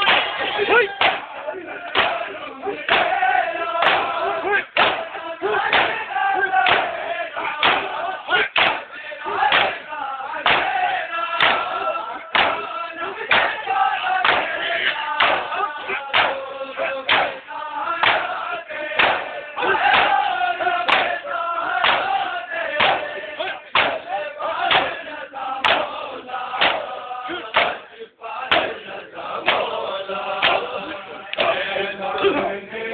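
A crowd of men chanting a noha, a Shia mourning lament, in unison. Steady rhythmic thumps come about every two-thirds of a second, typical of chest-beating (matam).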